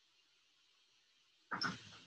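Near silence, then about three-quarters of the way in, a brief voiced sound from a man, just before he starts speaking.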